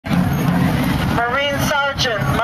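Steady low rumble of city street traffic, with a voice reading aloud coming in about a second in.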